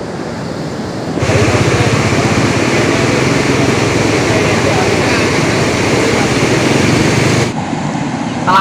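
Steady, loud rush of floodwater pouring through a dam's sluice gates. It comes in suddenly about a second in and cuts off near the end.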